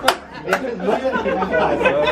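A group of men talking over one another and laughing, with two sharp clicks near the start, less than half a second apart.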